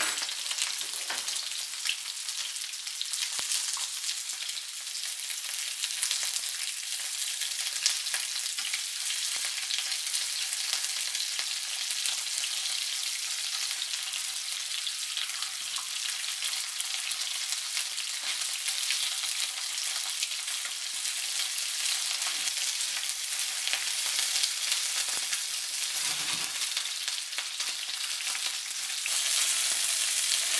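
Cornstarch-coated walleye pieces sizzling steadily as they pan-fry in hot oil, a dense crackling hiss that grows slightly louder near the end.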